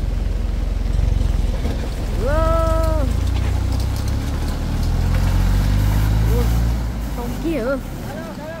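Engines of a tractor and a small truck running low and heavy while the tractor tow-starts the truck on a strap. An engine revs up, rising in pitch over a few seconds, then falls away near the end. A person calls out once, about two seconds in.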